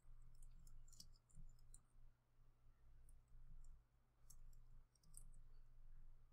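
Faint clicking of a computer keyboard and mouse as text is typed into a design app, a quick run of clicks in the first couple of seconds and scattered single clicks after, over a low steady hum.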